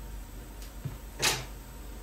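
Satin fabric being handled and smoothed on a table: light rustling and a faint click over a steady low hum, with a short sharp swish about halfway through.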